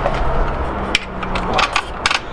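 Light metal clicks and taps from bicycle mudguard stays being moved into place by hand at the rear wheel: one sharp click about halfway, then a few more near the end, over a steady low hum.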